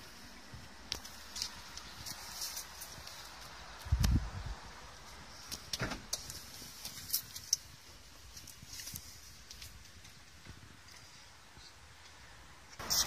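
Faint handling noises inside a parked car: scattered light clicks and ticks, with one soft low thump about four seconds in.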